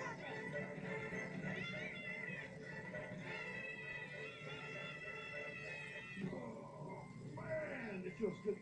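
Film soundtrack played from a screen's speaker and picked up in the room: background music with children shrieking in high, wavering voices, then a voice speaking near the end.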